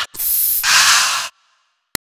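Aerosol deodorant can spraying: a hiss lasting just over a second, with a slight break partway through, then cutting off. A brief click comes near the end.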